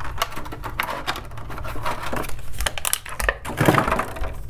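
Clear plastic packaging tray crinkling and clicking as it is handled, an uneven run of rustles and sharp clicks that grows busiest near the end.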